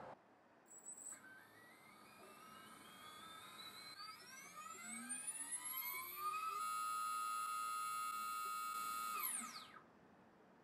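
SunnySky R1408 3200KV brushless motor spinning with no propeller on a KV test. Its whine climbs as the throttle ramps up, first in small steps and then smoothly, over about five seconds. It holds a steady full-speed whine for about three seconds, then falls away quickly as the throttle is cut near the end.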